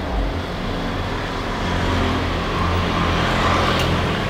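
Road traffic: a motor vehicle's engine hum and tyre noise on the road, growing louder as it passes close by toward the end.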